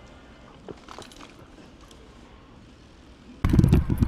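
Quiet outdoor background during a bike ride, with a few faint ticks about a second in. Near the end it cuts suddenly to loud, low wind rumble on the microphone of a moving bike, and a man's voice begins.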